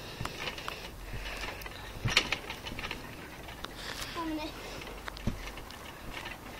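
Soft thumps of people bouncing on a garden trampoline mat, the strongest about two seconds in, with a short vocal sound a little after the middle.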